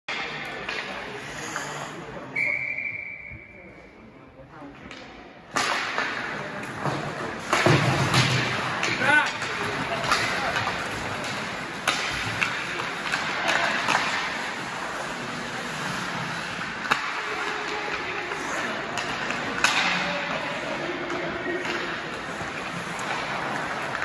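Ice hockey game in an indoor rink: a short steady referee's whistle about two seconds in, then from about five and a half seconds in spectators' voices and shouts over repeated sharp clacks of sticks and puck.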